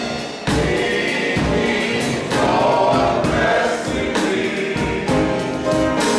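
Gospel music: a men's choir singing over instrumental accompaniment with a beat.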